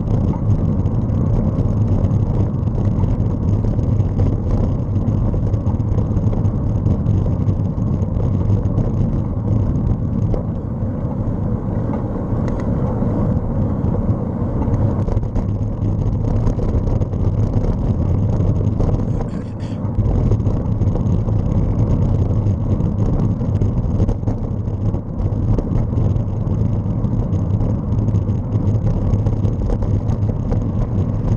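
Steady wind buffeting the microphone, with road rumble from a moving ride, dipping briefly about two-thirds of the way through.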